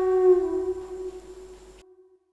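Background music: one long held note, flute-like, that fades away and ends in silence near the end.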